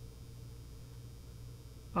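Room tone with a steady low hum and no other sound.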